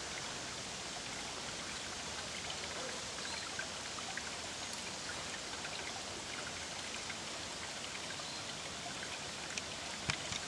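A small rocky creek trickling into a shallow pool: a steady rush of running water with scattered small drips and plinks.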